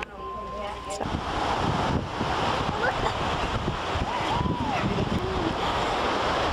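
Wind buffeting the microphone over ocean surf, starting suddenly about a second in after a brief stretch of quieter indoor sound with a steady tone. A few short cries that rise and fall come through the wind near the middle.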